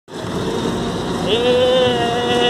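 Small indoor roller coaster train running along its track with a steady rumble. A little over halfway through, a rider starts a long, held "woo" cry at one pitch.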